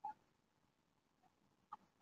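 Near silence: faint room tone, broken by two very short, faint chirps, one at the start and one near the end.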